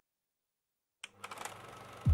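Silence for about a second, then the faint, rapid mechanical clatter of a film projector sound effect starts up.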